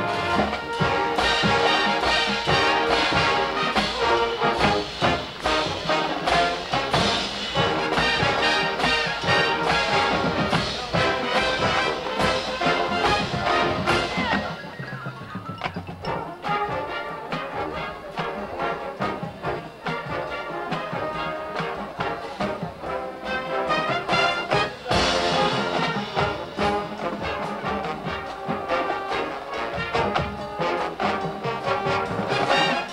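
Marching band with trombones and other brass playing a tune at full volume, dropping to a softer passage about halfway through and coming back in loud near the end.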